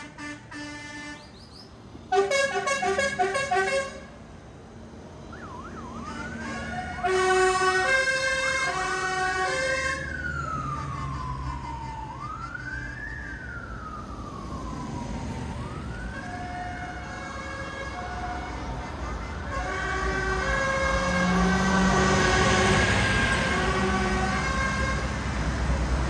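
Siren wailing, rising and falling in pitch several times in the middle, amid a tractor procession. Before it there are pulsed horn toots and stepped tonal notes, and further tones follow. Tractor engines rumble underneath, growing louder toward the end as one passes close.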